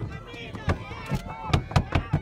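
Hands slapping and banging on a car's bodywork several times, the blows coming faster in the second half, over excited shouting.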